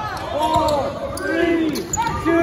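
Basketball sneakers squeaking on a hardwood gym floor as players cut and stop: a few short squeals, each rising and then falling in pitch.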